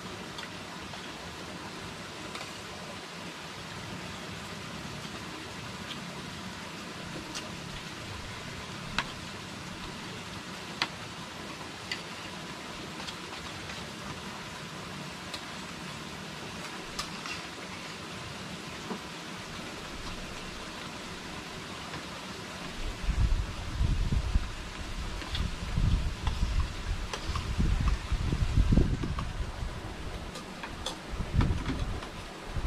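Spoons clicking lightly now and then against ceramic plates during a meal, over a steady background hiss. In the last quarter, loud irregular low rumbling bursts come in.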